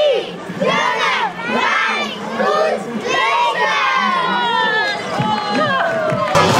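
A group of young children shouting and calling out together, many high voices overlapping.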